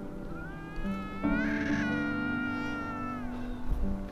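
A single long, mewing animal call, about three seconds, that rises slowly, swells, then glides down in pitch, over soft background piano music.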